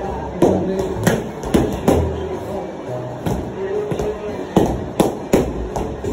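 A series of sharp smacks or thuds, about eight at irregular spacing, over background music and voices.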